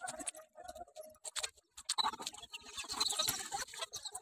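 Irregular clicks and crackles of movement through dry undergrowth, thickening into denser rustling about two seconds in.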